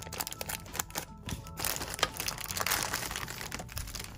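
Thin clear plastic packaging bags crinkling and rustling as they are cut with small scissors and pulled open, with one sharp click about halfway through.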